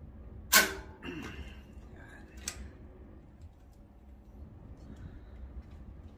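Mountain bike tire being worked onto its rim by hand: a loud, sharp rubbery snap at about half a second, a short squeak falling in pitch just after, and a second, smaller snap about two seconds later.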